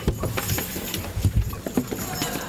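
Irregular knocks and thumps of footsteps and instruments being handled on a stage as a band gets into position, with a couple of heavier low thumps a little over a second in.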